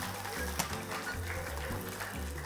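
Background music with a steady bass beat, and a single sharp click a little over half a second in.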